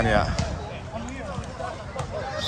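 Hands striking a volleyball during play: a few short thumps of the ball being hit, with voices of players and onlookers around.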